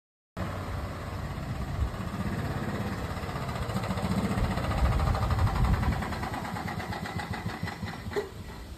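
A small golf cart engine running as the cart drives up close, growing louder to a peak around the middle and then easing off.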